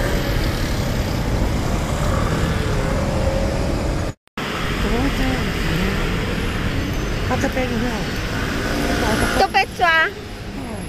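Steady city road traffic, vehicles running past close by. The sound drops out for a moment about four seconds in, and the traffic carries on after it.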